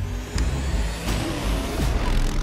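Dune buggy engine running as it drives along a gravel dirt trail, with a rush of tyre and road noise building in the second half.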